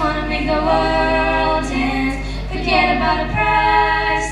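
Several female voices singing together into microphones, holding long notes.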